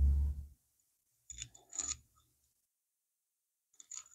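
Handling noise at a workbench: a dull low thump at the start, then a few light clicks and clinks of small metal parts being handled, a pair about a second and a half in and another near the end.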